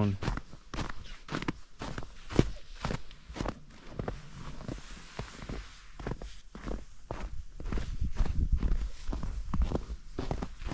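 Footsteps crunching in fresh snow on a packed trail, a steady walking pace of about two steps a second, with one sharper crunch a couple of seconds in.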